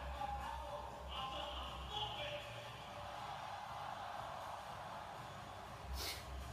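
A television playing a live stadium broadcast: arena music with a pulsing low beat over crowd noise, heard through the TV's speaker in a room.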